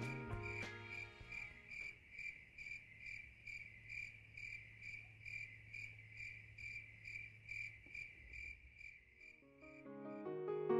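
A cricket chirping steadily, about three short high chirps a second, faint. Music fades out at the start and piano music comes in near the end.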